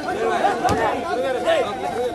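A crowd of men talking over one another during a scuffle, with one brief sharp knock a little under a second in.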